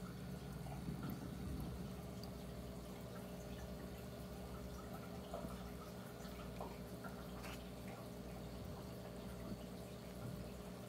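Aquarium filter running: water trickling and dripping into the tank, with faint small splashes, over a steady low hum.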